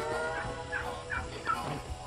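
Domestic fowl giving about four short, high calls in quick succession, faint under steady background tones.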